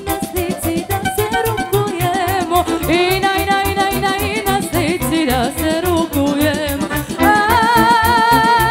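Live folk band music: an accordion and a drum kit playing a steady dance beat, with singing over it. The music grows louder about seven seconds in.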